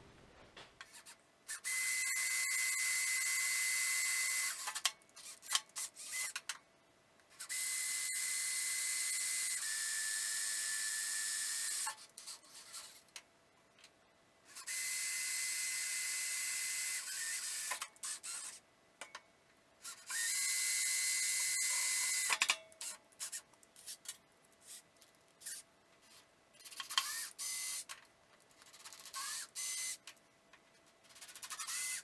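DeWalt cordless drill drilling holes into the steel frame: four runs of a few seconds each, every one a steady motor whine with a hiss of cutting, and short stop-start bursts of the trigger in between. In one run the whine drops slightly as the motor slows under load.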